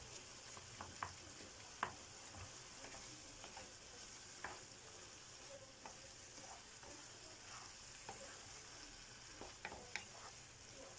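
Pasta with shrimp and vegetables sizzling in a frying pan, a faint steady hiss, while a wooden spoon stirs it. The spoon knocks and scrapes against the pan now and then, most sharply about two seconds in and again near the end.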